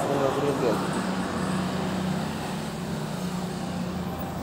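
A person's voice briefly at the start, then a steady low background hum with a faint constant tone.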